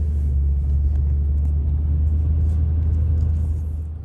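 Steady low rumble of road and engine noise inside a moving car's cabin while driving along a highway.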